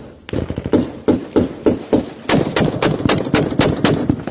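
Rapid gunfire in an armed clash: a string of shots about four a second, quickening to a denser volley from a little past halfway.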